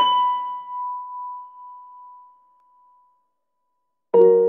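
A single high piano note, struck right at the start, ringing out and dying away over about three seconds.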